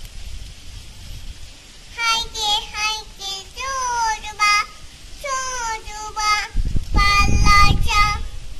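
A small child singing in a high voice, with phrases starting about two seconds in. A low rumble rises under the singing near the end.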